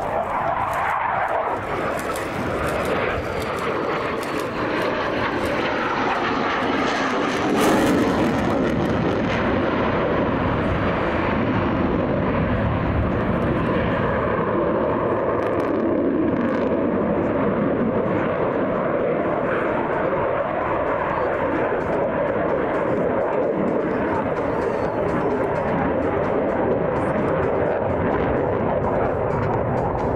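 An F-16 Fighting Falcon's jet engine during an aerobatic display pass: loud, steady jet noise that swells to its loudest about eight seconds in.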